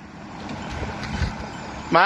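Pickup truck driving along the road, its engine and tyre noise growing to a peak about a second in and then easing off.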